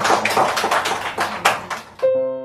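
A small audience applauding: many quick, uneven hand claps.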